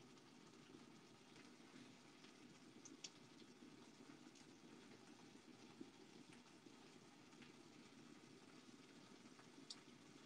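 Near silence: the faint, steady simmer of a pan of tomato and onion curry sauce, with a few small ticks.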